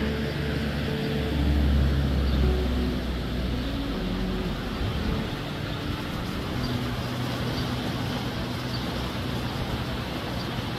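A road vehicle passes close by, its low engine rumble loudest about two seconds in and fading by four seconds, over a steady rushing background noise.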